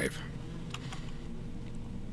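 A few faint computer keyboard clicks over a low steady hum.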